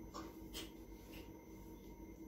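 Faint, brief rubbing sounds of fingertips spreading a liquid face peel over the skin, three or four soft strokes over a low steady room hum.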